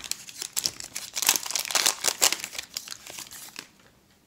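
Foil wrapper of a Panini Mosaic football card hanger pack being torn open and crinkled by hand, a dense crackle that dies away shortly before the end.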